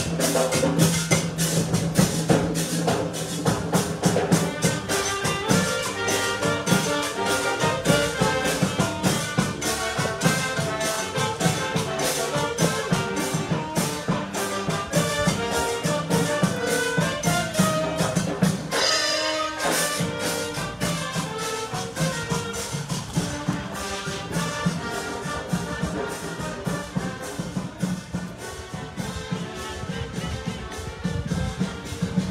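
Cimarrona band playing: brass with trumpets over steady drums and percussion, in a fast, even rhythm. It grows gradually fainter in the second half.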